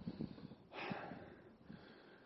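A hiker's faint, heavy breathing, with one louder exhale just under a second in, over a few light low knocks. The hiker is out of breath from scrambling up rocks and steps.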